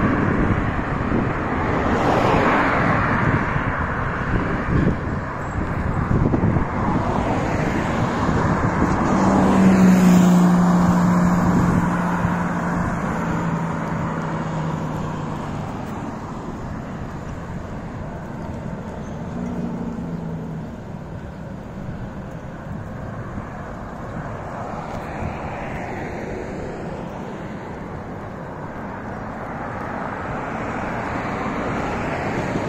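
Road traffic on a multi-lane street: cars driving past. The loudest vehicle goes by about ten seconds in, its low hum dropping slightly in pitch as it passes, and the traffic is quieter in the second half.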